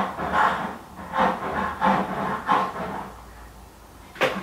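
A neighbour's saw cutting in a run of uneven strokes, about two or three a second, over a low hum. It dies away about three seconds in.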